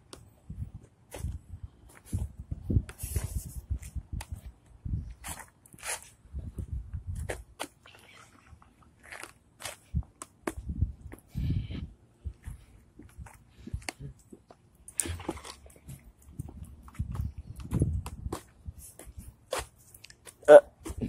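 Footsteps on pavement with irregular knocks and rubbing from a hand-held phone's microphone while walking.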